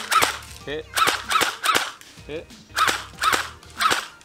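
Airsoft electric gun, a Well D98 Thompson M1A1 replica, firing single shots on semi-automatic in quick pairs of sharp clicks. It shoots weakly and sounds like a toy plunger.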